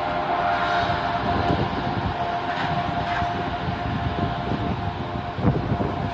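Commuter train running along the tracks, with a steady high whine over a low rumble. A single sharp knock stands out near the end.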